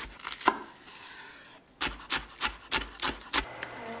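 Chef's knife slicing an onion on a bamboo cutting board, each cut knocking on the wood: a few quick cuts, a short pause, then a run of about seven even chops, roughly three a second, that stops shortly before the end.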